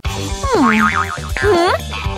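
Cartoon background music with two swooping, boing-like sounds over it: a falling glide that breaks into a wobbling tone about half a second in, then a shorter dip-and-rise swoop near the middle.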